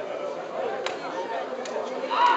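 Spectators chattering in the stands, with several voices overlapping, and a single sharp click about a second in.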